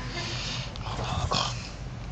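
A person laughing softly under the breath: a couple of breathy exhalations without voice.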